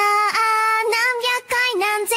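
A high, girlish female voice singing alone with no backing instruments: an isolated studio lead vocal, held notes with a slight waver and short breaks between sung syllables.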